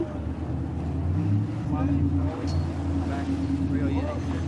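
Sportfishing boat's engine running at a steady low drone, with faint voices in the background.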